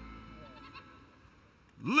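Faint background that fades toward near quiet. Near the end, a ring announcer's voice starts a drawn-out, rising "Ladies…".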